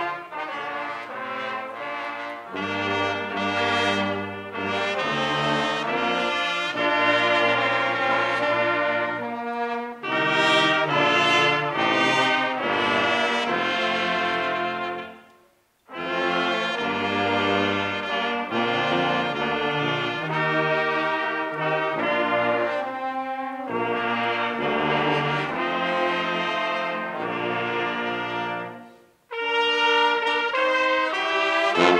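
Brass band of sousaphone, trombones, trumpets, tenor horns and alto saxophone playing in full chords over a deep bass line. The music stops briefly about halfway through and again just before the end, then comes back in.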